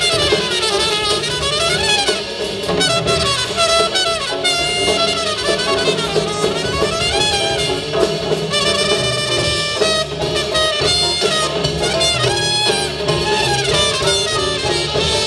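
Live jazz: a trumpet soloing in phrases that climb and fall, over piano, upright bass and drums.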